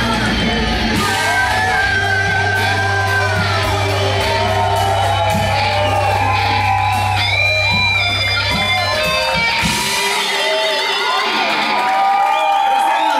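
Live rock band closing out a song: electric guitar lines over a held bass note, with the singer yelling. The band stops about ten seconds in and the crowd's voices follow.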